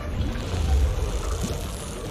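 Anime soundtrack sound effect: a deep low rumble that swells about half a second to a second in, over a steady held drone.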